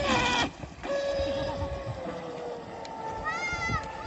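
Electric motor of a fibreglass RC catamaran running at speed, a steady whine whose pitch slowly drops as the boat pulls away. Short, high, wavering calls come in near the end.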